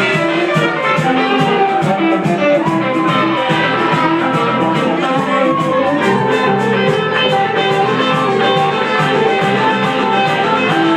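Live rock band playing loudly: electric guitars playing melodic lines over a drum kit that keeps a steady beat on the cymbals.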